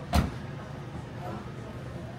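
A taxi's car door shutting with a single loud thud about a quarter second in, followed by a steady low rumble of the car and street.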